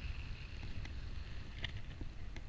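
Airflow buffeting the microphone of a camera in paragliding flight, a steady rumbling wind noise. A few short clicks come in the second half.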